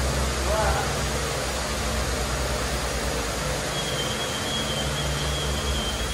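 Steady low machine hum under a broad, even hiss, like fans or running equipment in a workshop. A faint high steady whine joins about two-thirds of the way in.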